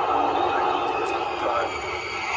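Starship launch livestream audio played through speakers: a steady rushing noise from the pad in the final seconds of the countdown, with a broadcast voice faintly over it.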